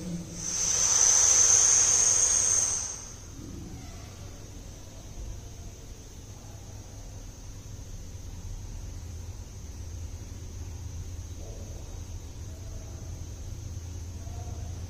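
A long hissing breath of air through pursed, beak-shaped lips, as in kaki mudra (crow-beak) pranayama, lasting about two and a half seconds near the start. After it, only a quieter low steady hum remains.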